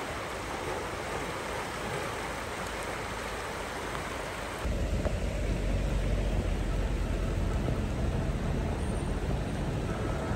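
Floodwater rushing down a swollen river, a steady hiss of fast-moving water. About halfway through the sound turns louder and deeper, into a low rumble.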